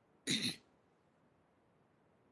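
A man briefly clears his throat: one short double burst about a quarter of a second in.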